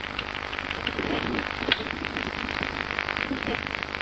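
Computer keyboard keys being typed in a quick, uneven run of clicks as a long credit card number is keyed in, over a steady hiss.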